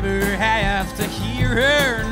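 Country band playing an instrumental break: mandolin, acoustic guitar, electric bass and drums, with a melody line that bends up and down in pitch.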